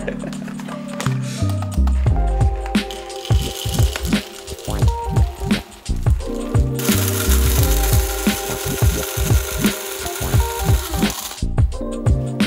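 Background music with a steady beat; about seven seconds in, an electric coffee grinder starts grinding beans, runs for about five seconds, and cuts off suddenly.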